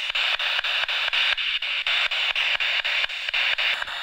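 Spirit box sweeping through radio stations: steady static with a click about five times a second as it jumps from station to station, the device used for hoped-for spirit replies.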